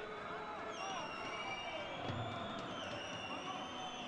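Football stadium crowd, a steady murmur of many voices, with long high-pitched whistles carrying over it.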